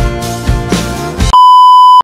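Background music with a beat, cut off about one and a half seconds in by a loud, steady high-pitched beep: the test tone that goes with TV colour bars.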